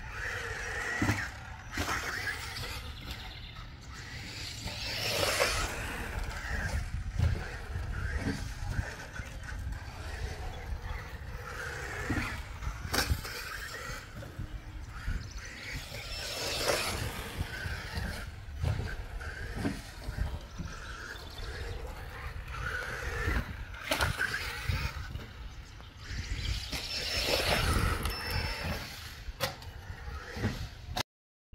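Team Associated RC10 electric buggy running laps on a dirt track: the motor and six-gear transmission whine through its aluminium chassis, swelling and fading as it accelerates and passes, over the hiss of the tyres on dirt. A few sharp knocks from landings and hits come through along the way.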